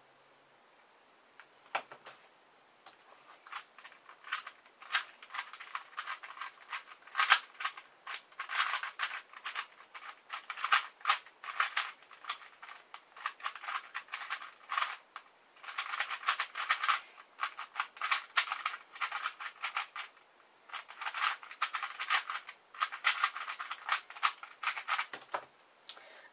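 Factory-lubed plastic QJ pillowed 3x3 puzzle cube turned rapidly in a timed speedsolve: a dense run of clicking and clacking layer turns that starts about two seconds in and stops just before the end, with a couple of brief pauses along the way.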